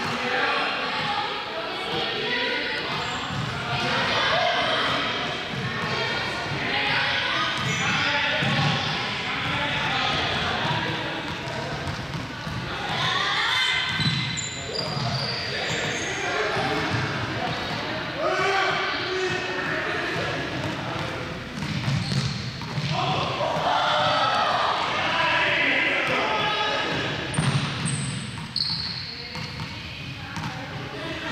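Indistinct voices echoing around a large sports hall, with repeated ball bounces and knocks on the hard floor.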